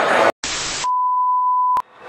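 An edited-in electronic sound effect: a brief burst of static hiss, then a single steady mid-pitched beep held for about a second, which ends in a sharp click.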